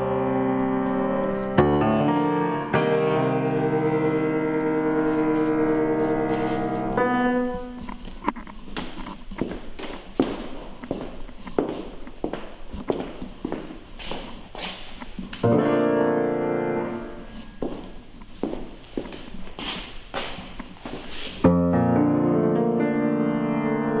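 Grand piano chords held and ringing out in a reverberant room. Twice they give way to stretches of sharp knocks and clicks: from about seven to fifteen seconds in and from about seventeen to twenty-one seconds in. After each stretch the chords return.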